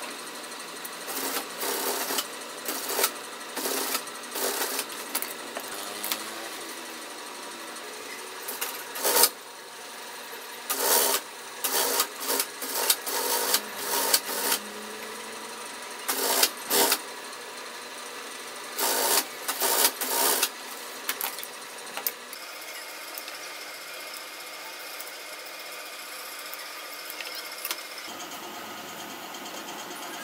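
Brother industrial sewing machine stitching bag panels in short, irregular bursts, each run lasting a fraction of a second. The bursts stop about two-thirds of the way through, leaving a steadier, quieter sound.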